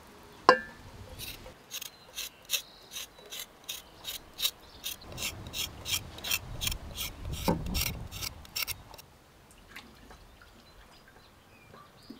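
A kitchen knife scraping the thin skin off a new potato in quick, even strokes, about four a second, for some seven seconds before stopping. A sharp click sounds about half a second in, as water drips from the washing basin.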